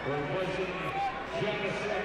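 Basketball arena crowd murmur with faint background voices.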